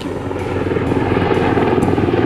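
UH-60 Black Hawk helicopter flying overhead, its main rotor chopping fast and evenly, growing steadily louder.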